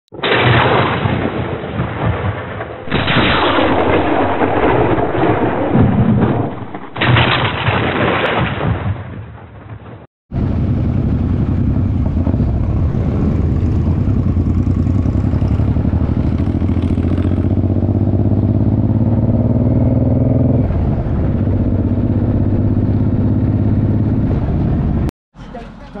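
For about ten seconds, loud, muffled intro audio with uneven surges. Then a motorcycle running along the road with the group: a steady engine sound whose pitch climbs slowly and drops back about 21 seconds in.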